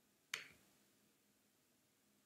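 A single short, sharp click about a third of a second in, against near silence.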